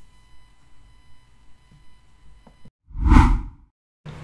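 A single whoosh transition sound effect about three seconds in, swelling and fading within about half a second, after a couple of seconds of faint room tone with a thin steady hum.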